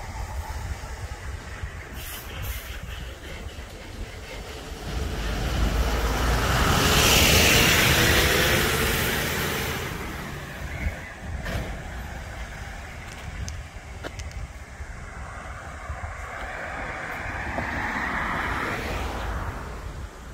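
A road vehicle passing, its sound swelling and then fading over several seconds in the first half, over a steady low rumble; a second, quieter pass swells and fades near the end.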